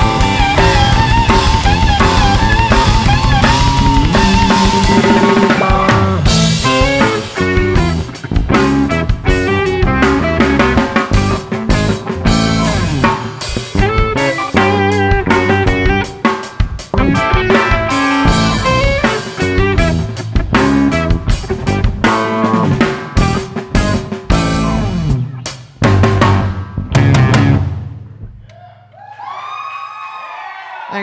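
Live blues-rock band playing an instrumental passage on electric guitar, electric bass, keyboard and drum kit, with busy drumming. The band stops about two seconds before the end, leaving a held low note that fades as the song ends.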